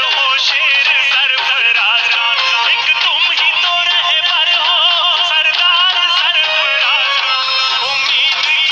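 A young man singing a folk-style song in a high, wavering voice with heavy ornaments on the held notes, over steady hand beats on a plastic water cooler used as a drum.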